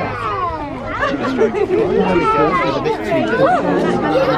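Overlapping chatter of a crowd of children and adults, several voices talking and exclaiming at once.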